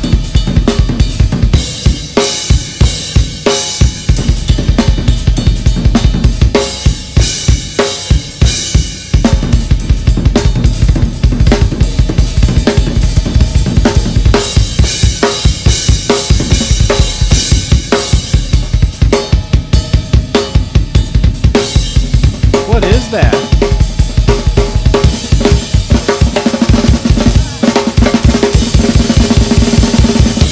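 Drum solo on a DW acoustic drum kit with Zildjian cymbals: rapid, dense strokes on bass drum, snare and toms with cymbal crashes and hi-hat, played without a break.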